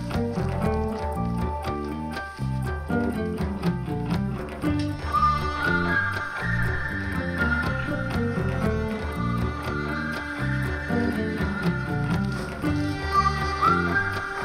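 Instrumental music on electric bass, keyboard and cello: the bass plays a steady run of short notes beneath held higher notes that slide upward now and then.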